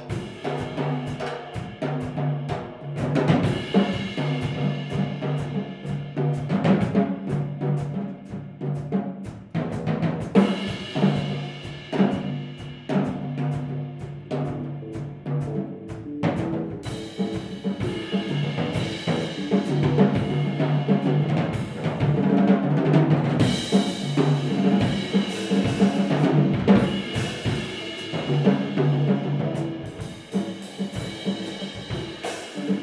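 Jazz combo playing a tune: a drum kit plays busily, with many cymbal and drum strokes, over a repeating bass line, with sustained pitched notes higher up.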